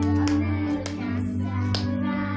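Karaoke music: a pop backing track with a steady bass line and sharp percussion hits, with girls singing into handheld microphones over it.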